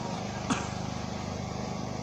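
A steady mechanical hum, with one short click about half a second in.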